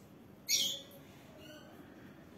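Ballpoint pen writing on workbook paper, with a brief faint scratch about half a second in, otherwise quiet.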